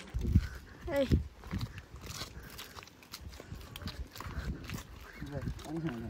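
Mostly speech: a voice calls out "hey" about a second in, then a few scattered words.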